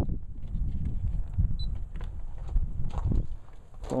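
Low, uneven rumble of wind and movement on a helmet-mounted camcorder's microphone while its wearer walks on grass, with a few faint footfalls.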